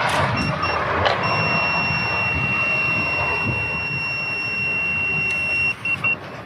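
Handheld breathalyser sounding two short beeps, then a steady high-pitched tone while a man blows one long breath into it, with the rush of his breath heard throughout. Near the end the tone stops and gives a couple of quick beeps.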